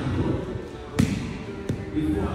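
Two dull thuds of a dumbbell being set down on the rubber gym floor during dumbbell snatches, the first about a second in and louder, the second a little under a second later.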